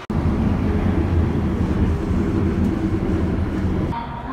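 Inside a moving train: a steady, loud low rumble of the carriage running along the track, starting abruptly and dropping away near the end.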